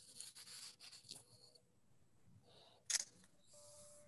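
Faint rustling, then one sharp click about three seconds in, heard over a video-call line.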